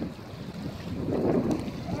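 Wind buffeting the microphone outdoors: a rushing noise that swells about a second in.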